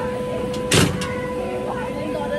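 A steady electric humming tone, with one short, loud burst of noise about three quarters of a second in.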